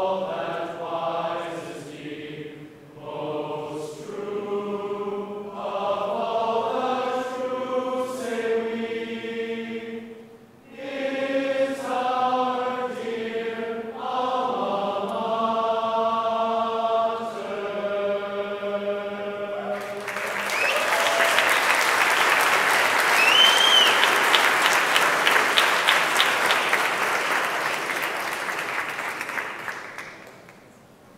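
A group of voices singing a slow song together, then, about two thirds of the way in, a crowd breaks into applause with a whistle, the clapping dying away at the very end.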